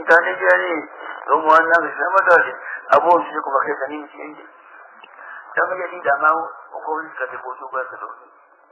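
A man speaking, giving Qur'an commentary in Afaan Oromo in a narrow, radio-like recording, with a few faint clicks in the first half.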